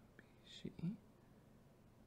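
Near silence except for a brief, quiet murmured or whispered word about half a second in.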